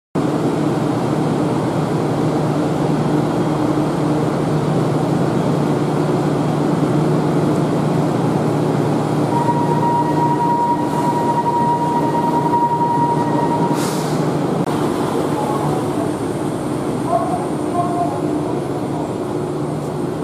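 A 1900-series streetcar, ex-Kyoto City Tram, standing at the platform with its onboard equipment humming steadily. A steady high tone joins for about four seconds midway, ending with a short hiss.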